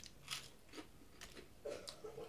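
Mouth noise of someone biting and chewing a fried onion ring: a series of faint, short crunches, about six in two seconds.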